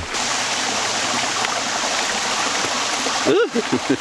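Small mountain stream running over rocks: a steady rushing of water. A person's voice cuts in briefly near the end.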